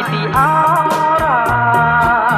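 Old Khmer pop song recording playing: a band with a sliding, wavering melody line over a bass that steps from note to note and a steady beat of about four strokes a second.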